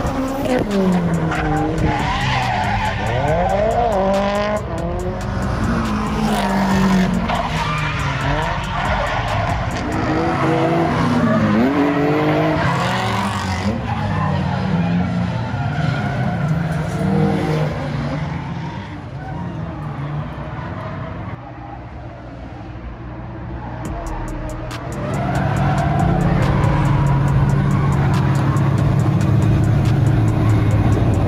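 Drift cars sliding through a corner with tyre squeal, their engines revving up and down hard. About five seconds before the end, a louder engine note at a steady pitch takes over.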